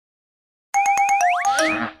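Cartoon sound effects from an animated logo: after a silent start, a quick run of about five short rising boings over sharp clicks, ending in a longer upward slide, with a laugh right at the end.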